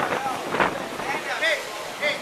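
Short calls and shouts from several voices, the clearest about a second and a half in, over a steady rushing background of wind on the microphone.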